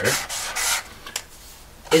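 Marker pen rubbing across a black writing board in two quick scratchy strokes as letters are written, followed by a small tap.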